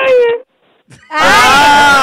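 People wailing loudly with laughter: a long, high, drawn-out cry cuts off about half a second in, and after a short pause a new loud wailing cry rises with several voices at once.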